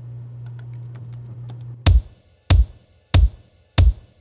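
An isolated kick drum stem playing back from a mix, heavy single hits evenly spaced about one and a half a second, starting about two seconds in. Before it a low steady hum and a few light clicks of computer keys or a mouse.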